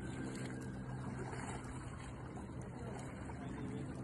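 A steady low hum over an even rushing noise.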